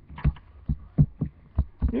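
An irregular series of about six short, dull low thumps in two seconds.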